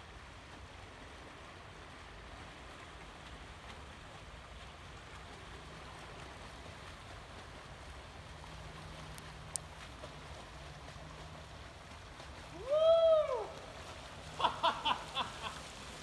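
Faint, steady splashing of fat-bike tyres ploughing through shallow floodwater. Near the end a voice gives a loud whoop that rises and falls, followed by a few short cries.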